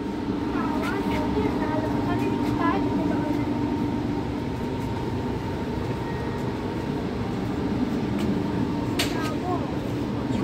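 Steady mechanical hum inside a railway passenger coach standing at the platform, with a faint steady whine running through it and distant voices talking.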